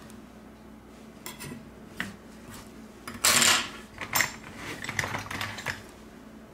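Metal tweezers clicking and scraping against a smartphone's internal frame and plastic parts, in scattered small ticks, with one louder half-second scrape about three seconds in.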